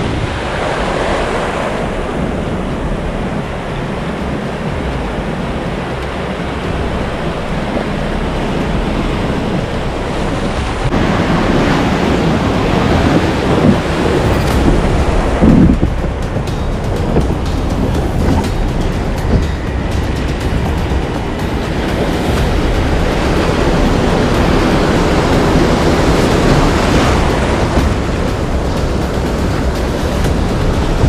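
Breaking surf and whitewater washing around a kayak as it is paddled out through the waves, with wind on the microphone. It gets louder about a third of the way in, with the strongest splashes against the hull soon after.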